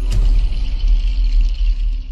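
Channel logo jingle: electronic sting music that opens with a hit, then holds a deep bass rumble under a high sustained shimmer.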